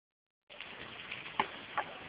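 Faint hiss, starting about half a second in, with a couple of small crunches of railway ballast gravel.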